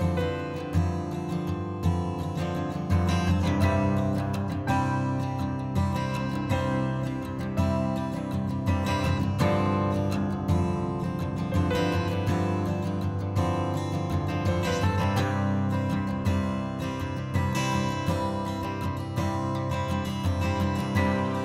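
Background music led by strummed acoustic guitar.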